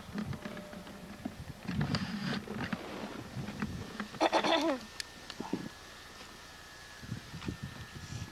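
A person's short, wavering cry, falling in pitch, about four seconds in. Around it are scattered thumps and scuffs of wrestlers moving on a tarp-covered plywood ring.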